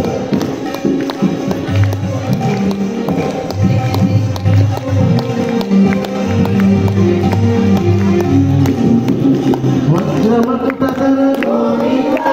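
Hindu devotional music: voices singing in a chant-like style, with long held notes over a regular percussion beat.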